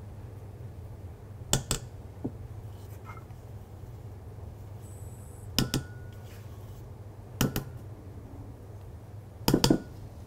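A spatula knocks and scrapes against stainless-steel mixing bowls as meringue is scraped from one bowl into another. There are four short clusters of sharp metallic clacks, a few seconds apart, over a steady low hum.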